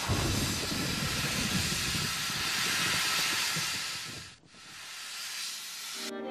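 A loud rushing hiss with a low rumble underneath. About four and a half seconds in it drops away almost to nothing, then swells back.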